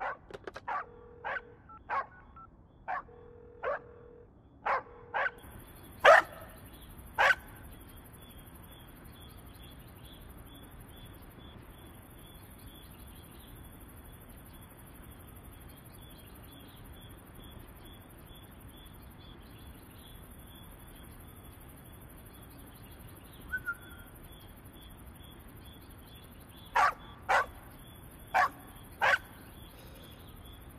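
A dog barking in short, sharp barks: a run of them in the first seven seconds, then four more near the end. In between runs a steady, high chirring of night insects.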